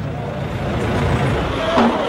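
Street ambience from the news footage: a steady rumble and hiss like traffic, with a brief voice near the end.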